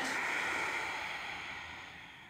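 A woman's long, slow exhale in a breathing exercise, a breathy hiss that fades away over about two seconds.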